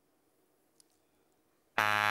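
Near silence, then shortly before the end a contestant's buzzer on a quiz desk goes off: a loud, steady electric buzz.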